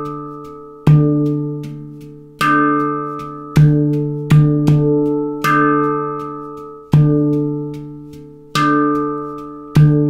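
Victor Levinson handpan in a D minor scale played slowly, one stroke at a time: the low D ding note is struck and rings out between strokes, with lighter taps in between, about one stroke every second or so.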